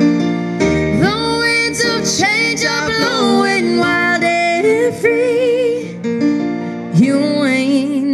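A female voice singing a slow ballad with vibrato, live into a microphone, over sustained keyboard piano chords. The voice enters about a second in, breaks off briefly near six seconds, and comes back about a second later.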